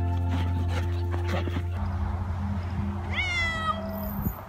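A domestic cat meows once near the end, a single call that falls in pitch, over steady background music.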